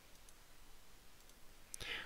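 A few faint computer mouse clicks against quiet room tone, with a short louder sound near the end.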